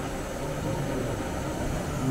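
A steady rushing noise with no distinct events.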